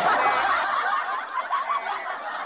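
Several people laughing and snickering together over a livestream call.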